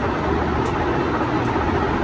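Steady rushing background noise with a low rumble and no clear events.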